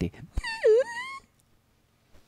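A single high-pitched wail, just under a second long, that dips in pitch and then climbs.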